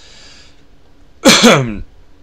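A man's quick breath in, then one loud, sharp burst from his throat and nose lasting about half a second, a bit over a second in.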